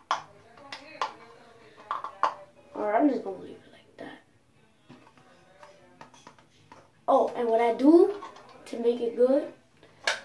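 A voice singing without clear words, in a small room, with a few sharp clicks in the first two seconds, typical of a plastic container being handled.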